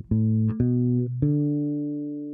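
Hayman 40/40 electric bass played fingerstyle: three notes climbing a D major pentatonic scale, the last one held and ringing out.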